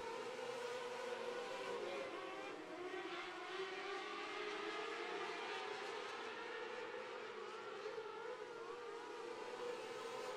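Engines of a pack of 600cc micro sprint cars racing together, heard faintly as one steady drone made of several overlapping pitches that rise and fall.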